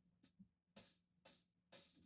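Near silence with a few faint percussion ticks from the drum kit, about half a second apart, as the band counts in to the song.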